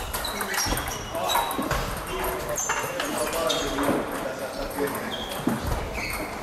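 Table tennis balls struck by bats and bouncing on tables, from the near rally and the surrounding tables: a quick, irregular run of sharp clicks and short high pings, with voices murmuring in the hall.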